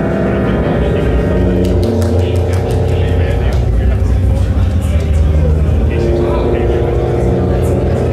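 Synthesized music of a 256-byte demoscene intro: layered steady tones over a low drone, the notes shifting every second or two.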